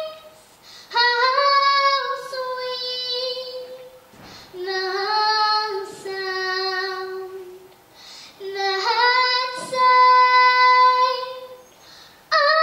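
A girl singing solo and unaccompanied, in three slow phrases of long held notes with pauses for breath between them.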